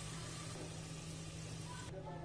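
Faint, steady sizzle of sliced onions frying golden in hot oil in a pot, over a low steady hum; the sizzle cuts off just before the end.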